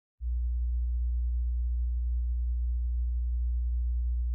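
A single steady, very deep electronic tone that starts just after the beginning and holds without change.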